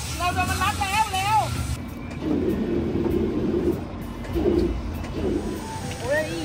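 A high-pitched voice in a wavering, sing-song melody for about the first second and a half, then lower voices talking, muffled.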